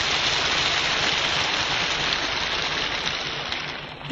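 Audience applause, an even patter of many hands that fades away toward the end.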